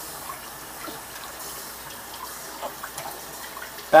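Water running steadily from a kitchen faucet into a stainless-steel sink.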